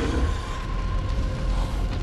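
Film sound effects: a deep, steady rumble with a faint high hum held over it, and no music or voices.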